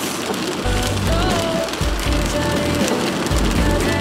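Steady rain on a car's roof and windows, with a pop song coming in about a second in: a repeating bass beat under a melody line.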